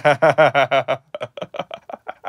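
A man laughing: a quick run of loud 'ha-ha' pulses in the first second that turns into quieter, softer chuckles in the second second.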